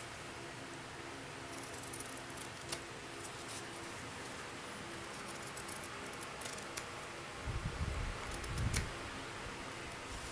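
Scissors snipping through cross-stitch fabric as it is trimmed to size: a scattered string of short, sharp snips over a faint steady hum, with a few low thumps near the end.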